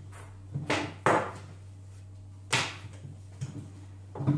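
Wooden rolling pin rolling out stiff pasta dough on a wooden board: short rolling strokes with wood-on-wood knocks, two close together about a second in and another at about two and a half seconds.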